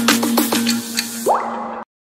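Intro jingle: a held note under a quick run of short, falling 'bloop' sound effects like water drops, a rising sweep near the end, then the sound cuts off suddenly.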